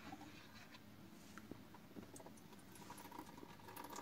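Very faint patter of a thin stream of purified water from a reverse-osmosis purifier's outlet tube running into a plastic measuring jug. The flow is weak because the purifier's storage-tank valve is shut.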